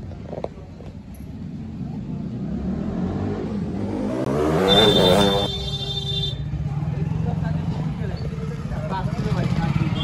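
A motor vehicle passing close by, building up to its loudest about halfway through, with a steady low engine hum and people's voices around it.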